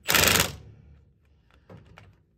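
A half-second burst of an impact wrench hammering at the start, spinning the nut that draws the ball joint out of the steering knuckle, then a few faint clinks of the socket and extension being handled near the end.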